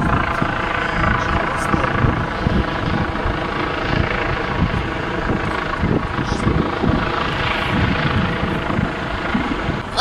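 Police helicopter flying overhead: a steady drone of rotor and engine, with gusts of wind rumbling on the microphone.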